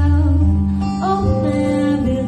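A woman singing a slow song into a microphone, accompanied by a live guitar; a sung note bends into a new held note about a second in.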